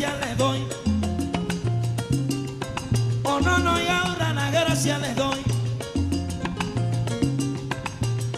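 Salsa band playing a son montuno passage without lyrics: a repeating bass figure under steady percussion, with a melodic phrase coming in over it about three seconds in.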